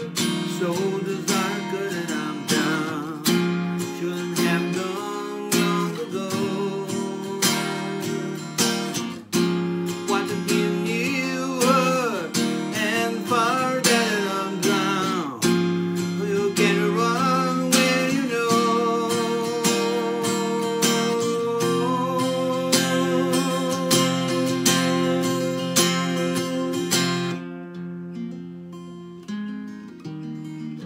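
Acoustic guitar strummed in a steady rhythm, playing an instrumental passage; near the end the strumming stops and the last chord is left ringing.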